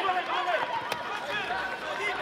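Taekwondo bout in an arena: overlapping shouts and calls throughout, with one sharp smack about a second in as a kick lands on a fighter's body protector.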